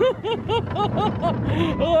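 A person laughing in a quick run of short syllables on a moving roller coaster, ending in an 'oh', over a steady low rumble of the ride.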